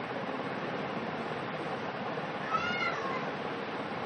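Steady background hiss, with one short high-pitched call about two and a half seconds in that rises and then falls in pitch over about half a second.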